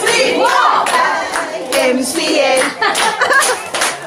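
Several people clapping their hands together, with women's voices singing and calling out over the claps.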